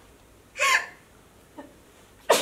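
A woman's voice: one short, sharp wordless vocal sound about half a second in, with a faint, brief second one near the end.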